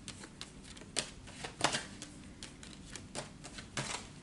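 Tarot deck being shuffled by hand: a run of quick, irregular soft clicks and taps of card edges, with a few louder snaps.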